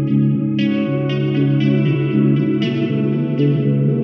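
Western-style guitar melody from an instrumental trap beat: single plucked notes that ring on, with no drums or bass under them.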